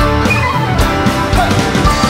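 Live Irish folk-punk band playing an instrumental passage: a lead melody line over guitar and a steady drum beat.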